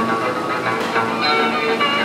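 Folk band music with the ringing, hammered strings of a cimbalom, several notes sounding at once.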